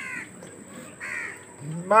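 A crow cawing twice, about a second apart.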